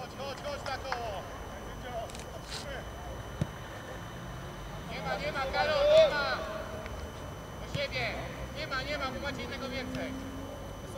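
Players' shouts on an outdoor football pitch, in three bursts, the loudest about six seconds in. A single thump about a third of the way through.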